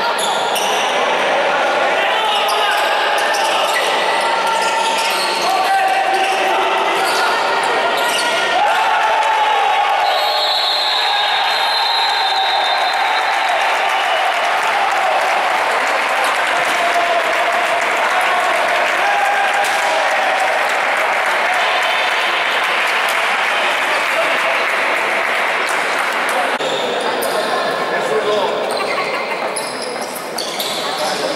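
Sounds of an indoor basketball game: a ball bouncing on the court and the voices of players and spectators calling out, echoing in a large sports hall.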